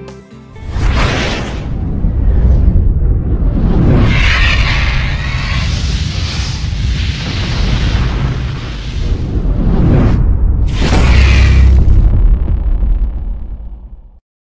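Cinematic logo-reveal sound effects for an animated fire-and-ice graphic: loud fiery whooshes and booms over a deep rumble. They swell about a second in, again around four seconds and again near eleven seconds, then cut off suddenly at the end.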